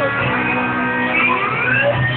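Live rock music with an electric guitar playing a lead line, several notes sliding up in pitch over the band.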